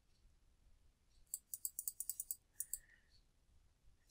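Computer mouse scroll wheel ticking through about a dozen notches in quick succession, starting a little over a second in, as a document is scrolled down. The clicks are faint.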